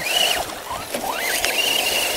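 Electric motor and drivetrain whine of a stock Axial SCX10 RC crawler with a Jeep Rubicon body, running on a 3S battery as it climbs a sandy, rocky bank. The high whine dips right after the start, climbs back up over the first second and then holds steady under throttle.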